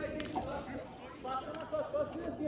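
Indistinct voices of people talking, with a short sharp knock a moment in.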